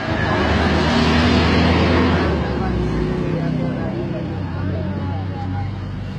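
A motor vehicle's engine running close by, starting loud and easing off after about two and a half seconds.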